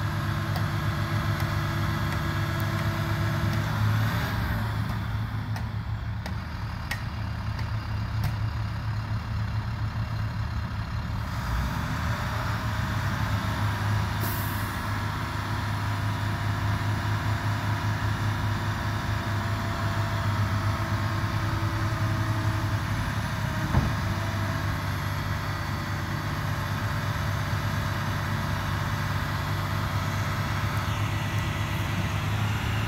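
Diesel engine of a municipal leaf-vacuum truck running steadily while its leaf vacuuming is paused. A brief hiss of air comes about halfway through, and a single knock later on.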